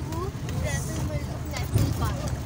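Steady low rumble of a jeep driving along an unpaved gravel track, heard from inside the cabin, with people talking over it.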